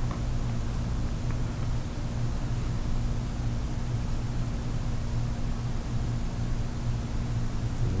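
Steady low hum with a faint hiss: room background noise, with no distinct strokes standing out.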